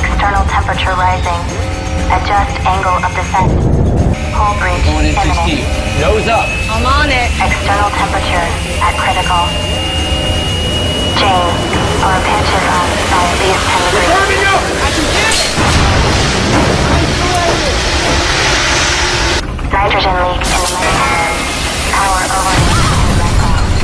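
Film sound of a spacecraft's rough descent: a steady low rumble with booms and cracks, under music and strained voices. A hiss of noise swells up about two-thirds of the way through.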